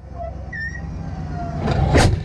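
Heavy military vehicle rumbling low and loud, building up to a blast near the end as its large gun fires.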